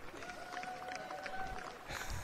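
Scattered clapping from a small crowd, with one long held call sounding over it for about a second and a half.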